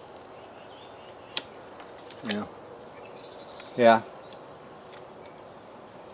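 Faint outdoor ambience with a steady high insect drone, broken by one sharp click about a second and a half in and a brief grunt just after two seconds.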